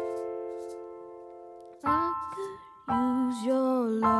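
Slow A-minor song on a Roland RD-2000 digital stage piano. A held chord fades for about two seconds, then new chords are struck and a boy's voice sings over them.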